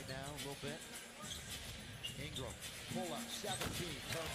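Quiet NBA game broadcast audio: a basketball bouncing on the hardwood court under a commentator talking and arena noise.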